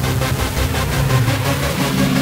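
Electronic music with a steady beat.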